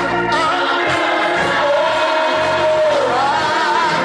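Gospel song with singing over Hammond organ chords. One long sung note is held through the middle and then slides down.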